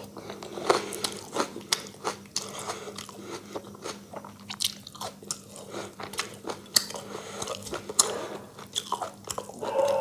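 Close-miked chewing with irregular wet clicks and small crunches, mixed with the squish of fingers working rice and curry on a steel plate.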